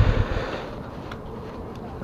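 Kawasaki Ninja 650R's parallel-twin engine idling, then shut off a moment in; after that only a faint hiss of wind and outdoor noise remains.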